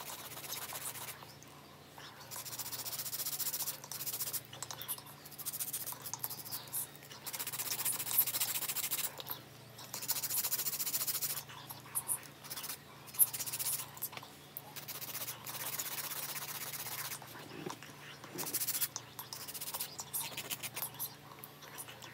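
Hand nail file rasping back and forth across long acrylic nail extensions to shape them. The filing comes in repeated bursts of rapid strokes, each lasting a second or two, with brief pauses between them.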